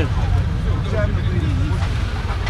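A heavy, steady low rumble, with a man's voice speaking faintly and briefly over it a few times.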